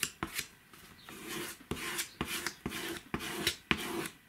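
A plastic spreader scraping and smoothing glued book paper down on a wooden board, in short rubbing strokes with sharp clicks as the tool strikes the board.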